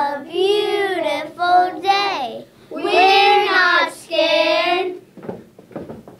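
A group of children chanting a rhyme together in a sing-song, two phrases in unison, then a few soft steps on the floor near the end as they start stepping.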